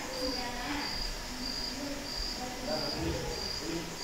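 A cricket chirping in the background, a short high-pitched pulse repeating evenly about every two thirds of a second over faint room noise.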